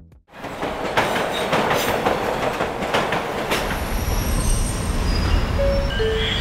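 A train running on rails: a dense clatter with a few sharp knocks, then high wheel squeals over a low rumble from about four seconds in.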